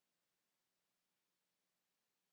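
Near silence: a very faint, steady hiss with nothing else heard, the audio apparently muted.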